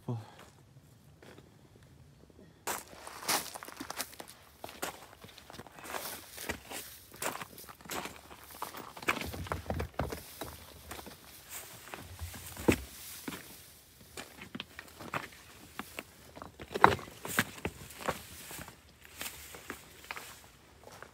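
Footsteps crunching and scuffing over rocks and gravel in a dry creek bed, irregular steps beginning about three seconds in, with a few sharper knocks of stone underfoot.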